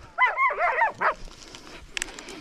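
A hunting dog yelping: a quick run of about five high, arching yelps in the first second, then it stops.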